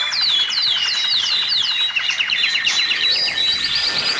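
A flock of birds chirping: quick, high, falling chirps, about four a second, over lighter trills.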